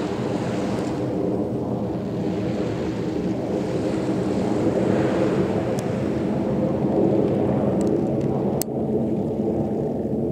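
Jet noise from a USAF F-15 fighter's twin turbofan engines as it manoeuvres overhead: a steady, deep roar that swells a little about halfway through.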